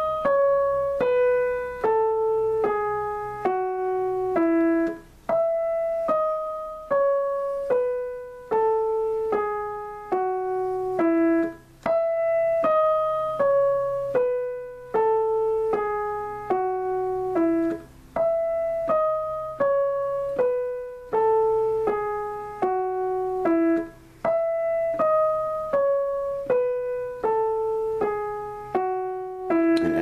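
Digital piano playing a one-octave E major scale downward, one note at a time at a slow, even tempo. The eight-note descending run is repeated over and over, about five times.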